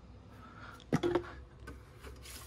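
Quiet handling noise with one sharp click about a second in, as a plastic AC/DC charger brick is handled over a plastic bucket.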